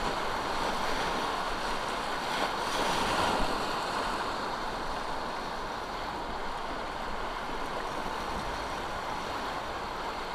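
Steady rushing of river rapids around a canoe running whitewater, swelling for a moment about a third of the way in.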